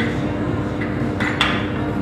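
Two light clinks about a second in as a wrench-and-gear liquor dispenser with glass shot glasses and a bottle is handled, over a steady low hum.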